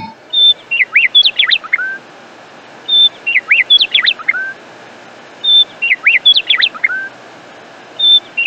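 Bird song: one short phrase of quick chirps and sweeping whistles, repeated the same way about every two and a half seconds over a faint steady hiss, like a looped recording.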